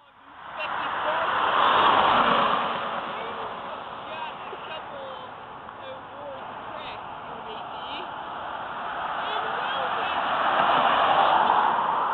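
Road traffic noise from vehicles passing on the road, one swelling up about two seconds in and fading, another building toward the end.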